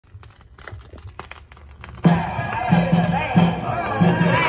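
A 7-inch vinyl single playing on a turntable: faint crackle and clicks of the stylus in the lead-in groove, then about two seconds in the record's music starts suddenly with repeated bass notes.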